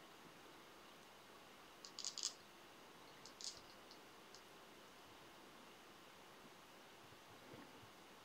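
Near silence, with a short cluster of faint high crackles about two seconds in and another near three and a half seconds: fingers handling a bunch of feather wing fibers and tying thread on the hook.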